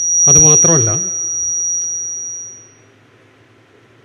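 A single steady high-pitched whistle of PA microphone feedback, loudest just after the start and fading out about three seconds in, with a man's voice speaking briefly over it near the start.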